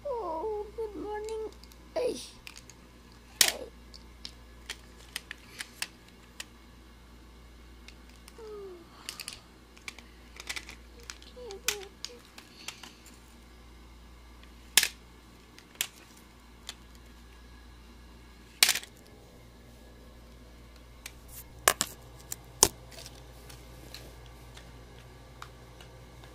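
A small dog, a shih tzu, whining in a short wavering whimper at the start, with a couple more brief whimpers later. Sharp separate clicks and taps are scattered throughout, the loudest about three and a half seconds in and again near fifteen, nineteen and twenty-two seconds.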